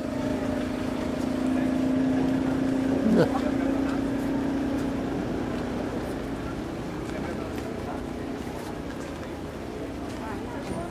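A steady low droning tone, strongest for the first five seconds and then fainter, over a hiss of rain falling on umbrellas, with a brief sweeping sound about three seconds in.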